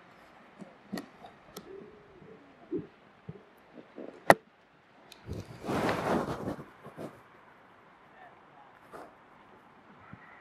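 Handling noise from a handheld zoom camera as it is zoomed and refocused: a few sharp clicks, the loudest about four seconds in, and a brief rustle around six seconds. Faint voices sit in the background.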